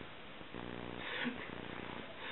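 A puppy's low, steady rumbling grumble in short stretches with brief pauses between them, while it lies on its back being rubbed.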